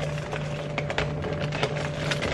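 Short clicks and taps of a strawberry gift box being handled and opened, over steady background music.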